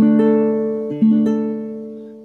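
Baritone ukulele picked over a held D minor chord, with the pinky adding the fifth-fret note. Two more notes are plucked, one just after the start and one about a second in, and the notes ring on and fade.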